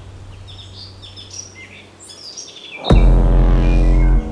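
Birds chirping with many short, high calls over a faint low hum. About three seconds in, a sudden deep bass hit from the soundtrack music sounds and holds to the end.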